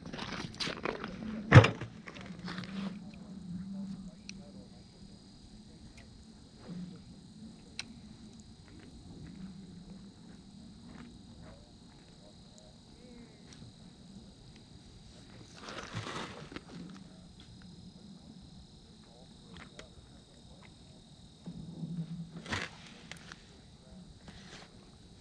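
Handling of ice-fishing gear on the ice: a few knocks at the start, the loudest a sharp knock about a second and a half in, then faint scattered clicks and two brief rustles.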